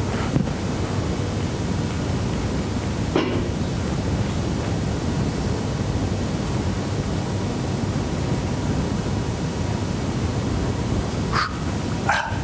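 Steady, even background noise in a meeting room, with no speech. A couple of brief faint sounds come through it, about three seconds in and again near the end.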